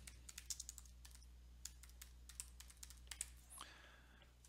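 Typing on a computer keyboard: a quick, irregular run of faint key clicks as a two-word phrase is typed, over a steady low hum.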